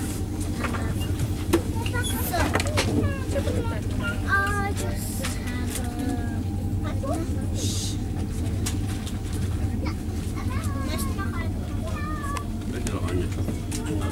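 Steady low rumble and hum inside a moving ICE high-speed train, heard from the passenger cabin. People's voices talk on and off over it.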